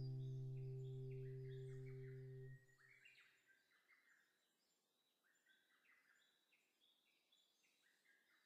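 The last sustained chord of a soft instrumental piece fades and stops about two and a half seconds in. Faint birdsong chirps carry on after it, over near silence.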